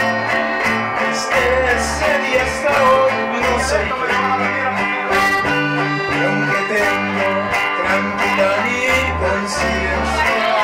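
Live band of button accordion, acoustic-electric guitar and electric bass playing a slow song, the bass holding low notes that change about once a second under the accordion and strummed guitar.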